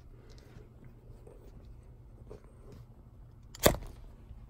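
Low steady hum with a few faint ticks, then a single sharp knock a little before the end.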